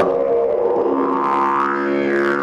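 A hand-carved cedar didgeridoo played in a steady, unbroken low drone. Its overtones slide up and down as the player reshapes the tone with lips and throat.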